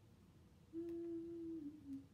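A woman humming one held note for about a second, dipping slightly in pitch at the end, while she struggles to open a stuck eyeshadow palette.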